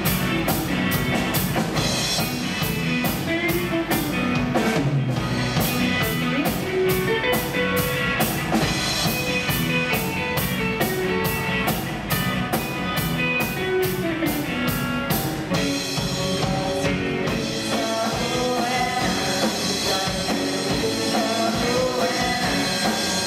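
Live rock band playing, with an electric guitar to the fore over bass and drum kit. The steady drum beat drops out about two-thirds of the way through and the sound thins in the low end.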